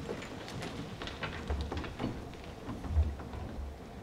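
A room full of people getting to their feet: rustling, shuffling and the clatter of chairs and seats, with low thumps about a second and a half in and again about three seconds in.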